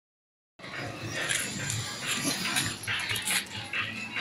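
Animal standoff between a ginger kitten, back arched in defence, and dogs: repeated short hisses over low growling, starting about half a second in.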